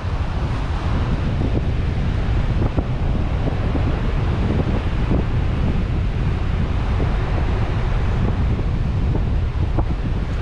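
Car driving slowly on a dirt road: a steady low rumble of tyre and wind noise, with scattered light knocks from the wheels going over the rough surface.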